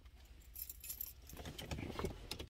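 Faint low rumble of a car cabin, with light jingling, rattling clicks starting about half a second in and growing busier as the phone is handled.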